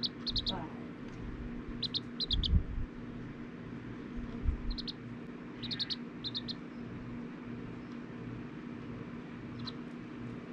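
Serama bantam chick peeping in quick groups of short, high peeps: a few right at the start, four at about two seconds, a longer run between about five and six and a half seconds, and a single peep near the end. A steady low hum and a couple of low thumps lie underneath.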